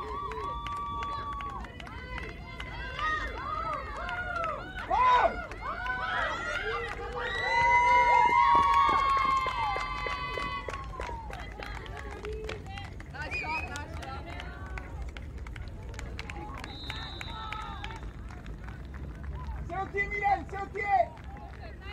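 Softball players shouting and cheering: several voices in long, drawn-out, overlapping calls. They are loudest about eight seconds in and thin to scattered shouts after that.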